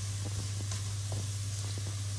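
Minced garlic sizzling in hot oil in a nonstick pan as it toasts and starts to brown, with faint scrapes and ticks of a spatula stirring it. A steady low hum runs underneath.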